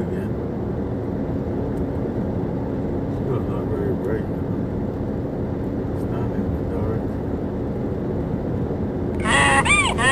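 Steady road and engine noise heard from inside a moving car. About nine seconds in, a loud added donkey bray starts: a cartoon hee-haw, its pitch rising and falling over and over.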